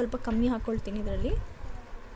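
A woman's voice speaking in short phrases for about the first second and a half, then a quieter stretch.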